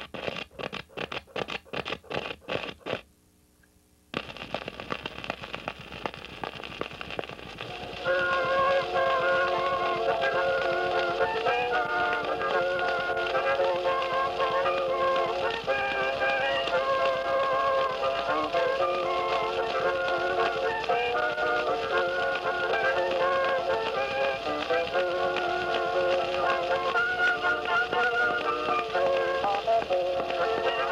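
Edison Blue Amberol cylinder record playing on a cylinder phonograph. It opens with a short run of rapid clicks and a brief dropout, then the cylinder's surface hiss. About eight seconds in, the record's instrumental introduction starts over the hiss, with no singing yet.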